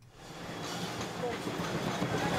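Stacked plastic crates of dirty dishes being handled and slid, giving a steady rattling clatter that swells up over the first half second, with faint voices behind it.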